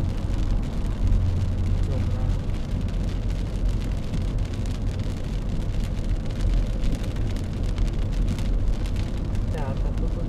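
Steady road noise inside a moving car: a low rumble from the engine and tyres, with tyre hiss on wet pavement.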